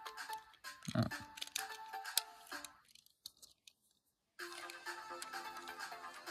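Background music with a steady beat that drops out for about a second and a half in the middle, then comes back.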